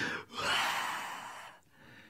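A man's breath into a microphone: a short breath at the start, then one long breathy exhale or sigh that fades out over about a second.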